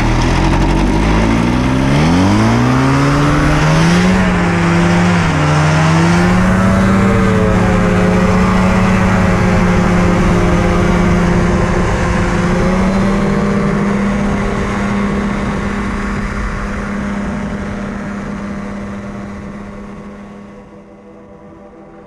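Rotax 503 two-stroke twin engine and propeller of a powered parachute throttling up, its pitch rising unevenly over the first several seconds, then held steady at full power for the takeoff run and climb. The sound fades down over the last several seconds.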